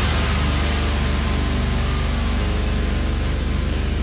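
Instrumental passage of a heavy metal song with no vocals: a steady, droning low end under a dense, noisy wash of distorted guitar.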